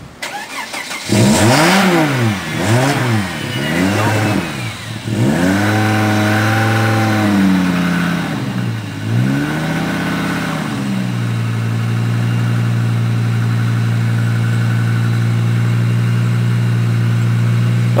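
Volvo V70's inline five-cylinder engine catching on a hard cold start about a second in, its revs surging up and down unevenly for about ten seconds before settling into a steady idle. The rough start comes after the car has sat for two days.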